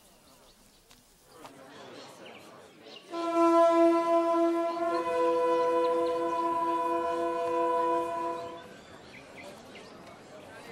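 Two horns blown in long, steady held notes: a lower note starts about three seconds in, a higher note joins about two seconds later, and both stop together about eight and a half seconds in, over a crowd murmur.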